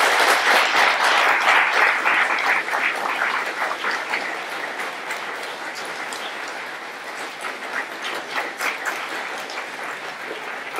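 Audience applauding, a dense wash of many hands clapping. It is loudest in the first few seconds, then settles to a lower, thinner clapping.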